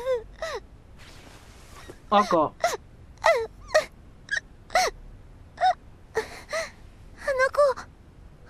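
A young woman sobbing: a string of short, choked cries, each bending in pitch, broken by gasping breaths.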